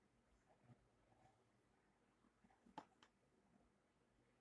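Near silence: faint room tone with a few faint small clicks, the clearest about three quarters of the way through.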